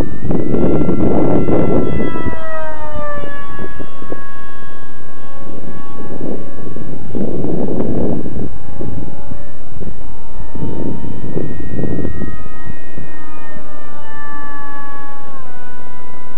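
Brushless electric motor and 6x5.5 APC pusher propeller of a foam RC jet whining in flight, the whine falling in pitch twice, a few seconds in and again near the end. Bursts of wind rumble on the microphone come and go.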